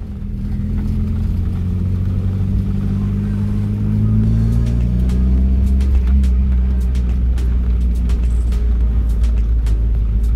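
Car engine and road rumble heard from inside the cabin while driving slowly: a steady low drone whose pitch drifts a little around the middle, with faint light knocks from the road.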